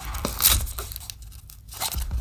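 Cardboard product box being opened by hand: the tucked end flap is pried and pulled free, with a short rasping scrape of paperboard about half a second in and more rustling near the end.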